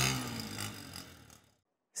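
A small motorcycle engine running as it rides away, its pitch dropping and the sound fading out about a second and a half in.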